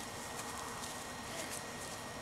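Soft rustle of footsteps walking over dry grass, a few faint irregular steps, against a faint steady outdoor background.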